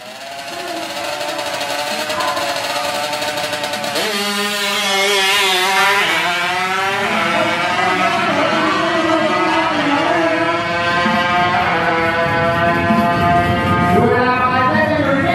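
Heavily tuned Honda Wave drag bike's small four-stroke single-cylinder engine revving hard and accelerating. Its pitch climbs and falls back several times as it shifts up through the gears.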